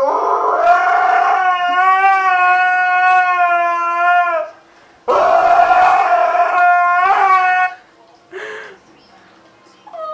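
Husky howling: two long howls, each sliding up at the start and then held steady, the second one shorter.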